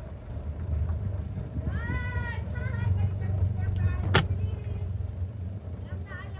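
Low wind rumble on the microphone from riding a bicycle, steady throughout. A few short high-pitched calls come about two, three and four seconds in, with a sharp click just after four seconds.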